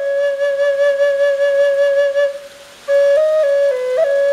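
Catalpa wood drone flute in G minor, tuned to 432 Hz, played: one long held note, a short break for breath about two and a half seconds in, then a few stepping notes of melody.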